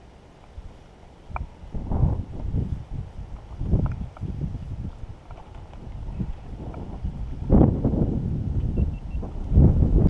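Wind buffeting the camera microphone in irregular low gusts, starting about a second and a half in and strongest near the end.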